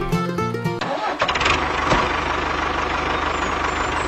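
Music stops a little under a second in; then a small tractor engine starts and runs steadily with a rapid, even beat.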